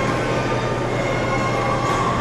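Steady, dense din of a dance party with a few held electronic tones above it, without a clear beat.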